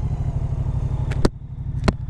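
Moto Guzzi V100 Mandello's 1042 cc 90-degree V-twin idling at a standstill, an even, steady pulsing beat. Two short sharp clicks come about a second in and near the end.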